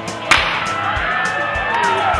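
A single loud, sharp crack about a third of a second in, dying away quickly, over background music with sliding, gliding notes.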